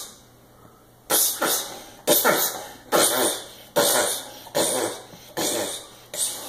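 A small child making a run of breathy, hissing "pshh" sound effects with his mouth, about eight or nine sudden bursts, roughly one every three-quarters of a second, starting about a second in.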